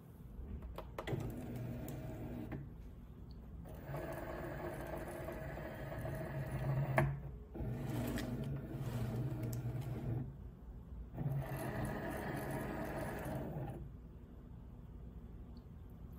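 Cricut Maker 3 cutting machine loading and measuring its cutting mat: the motor-driven rollers whir as they feed the mat in and back out, in several runs separated by short pauses.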